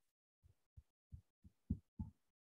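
A series of soft, low thumps, irregular and about three a second, over near silence.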